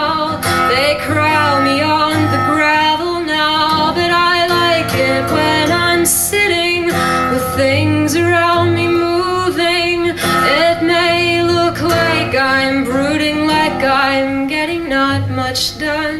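A woman singing with a wavering, ornamented voice while strumming her acoustic guitar, in a live solo performance.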